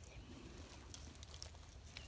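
Near silence: faint outdoor background hush, with a few faint light ticks about halfway through.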